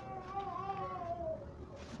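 One long drawn-out wailing call, its pitch wavering and slowly falling before it fades out near the end.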